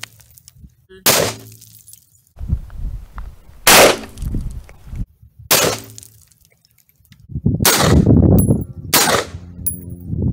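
Five single rifle shots at irregular gaps of about one to two and a half seconds.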